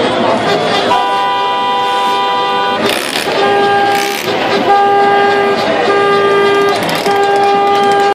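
Car horn honking in celebration: one long blast of about two seconds, then a run of shorter blasts of about a second each, with a crowd talking and shouting underneath.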